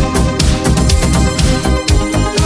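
1980s disco dance music from a continuous DJ mix, electronic, with a steady drum beat and heavy bass.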